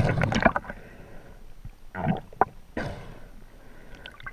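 Muffled underwater handling noise heard through a camera housing: three bursts of rushing water and knocks, in the first second, around two seconds and near three seconds in, as a diver grips and turns a speared tautog.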